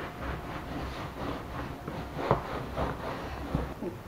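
Soft, irregular rubbing and handling of a damp, foamy microfibre cloth as it is wiped over a faux-leather cushion to lift off soap foam, with one sharper short sound a little past the middle.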